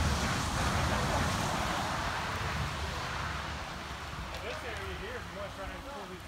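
Voices of people working outdoors, talking and calling out at a distance, heard over a steady rushing outdoor noise with a low rumble that slowly fades. The voices become clearer after about four seconds.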